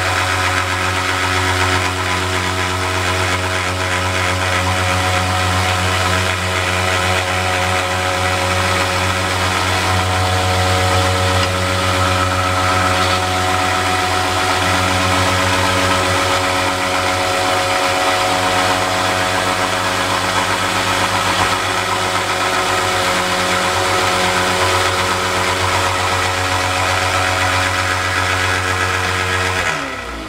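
A 1x30 belt sander running steadily, its motor humming loud and even, while a knife blade held in a C-clamp is dabbed against the belt at the platen edge to grind a rock pattern into the steel. Right at the end the motor is switched off and its hum starts to fall in pitch as it spins down.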